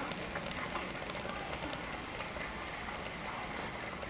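Steady indoor background noise with faint, indistinct voices.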